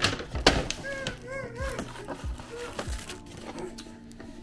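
Brown paper takeout bag crinkling and a plastic takeout container being handled, with a brief melodic phrase about a second in.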